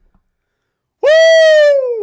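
A man's loud, high-pitched "woo!" cheer, starting about a second in, held for about a second and falling in pitch as it ends.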